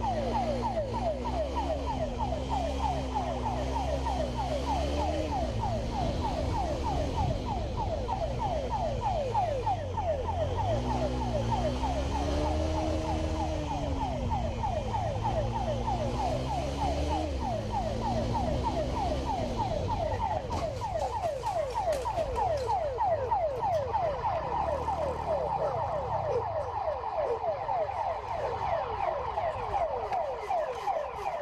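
Motorcycle-mounted police siren sounding in rapid, evenly repeated falling sweeps, over the motorcycle's engine rising and falling in pitch as it rides. The engine fades out about two-thirds of the way through while the siren keeps going.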